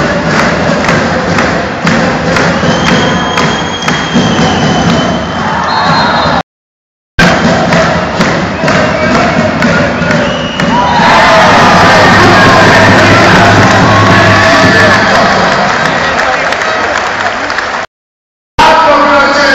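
Indoor volleyball arena crowd: a dense din of rhythmic clapping and noisemakers with music, broken by a brief dropout. About eleven seconds in, it swells into a loud, sustained roar of cheering.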